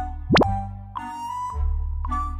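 Background music with a quick pop sound effect, a sharp upward sweep in pitch, about a third of a second in.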